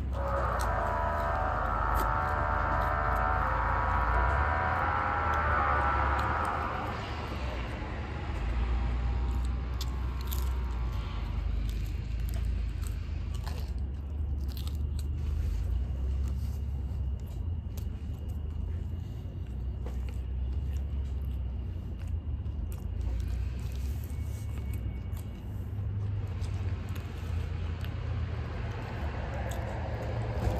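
A person biting and chewing pizza close to the microphone, with small wet mouth clicks, over a steady low rumble of traffic. A louder hum sits on top for about the first seven seconds, then fades.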